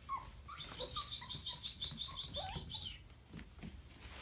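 Puppies whimpering and squeaking as they play, with a fast run of high-pitched squeaks lasting about two seconds and a few short yelps in between.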